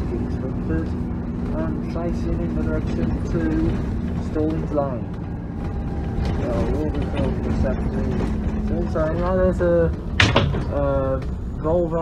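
A moving double-decker bus heard from inside its upper deck: engine and road noise make a low steady drone, with voices talking over it and one sharp knock about ten seconds in.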